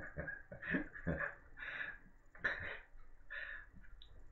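A man laughing quietly to himself: breathy chuckles in quick bursts at first, then spaced-out puffs that thin out toward the end.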